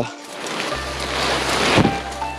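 Paraglider wing fabric and dry reeds rustling as they are handled close to the microphone, swelling about a second in.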